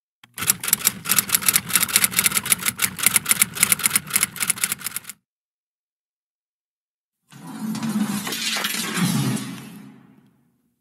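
Typewriter keystroke sound effect, rapid even clicks for about five seconds, matching a caption that types itself out on screen. After a short gap, a longer burst of noise swells and fades away near the end.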